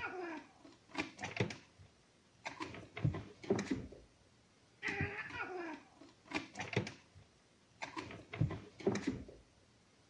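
Animal calls: a higher call followed by a lower, falling one, with sharp knocks in between, in a sequence that repeats about every five seconds.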